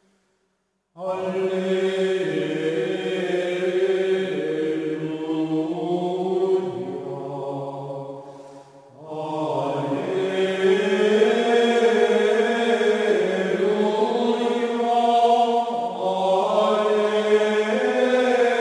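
Slow vocal chant: voices hold long sung notes in unhurried phrases. It enters about a second in after a brief silence, and eases off near the middle before a new, fuller phrase begins.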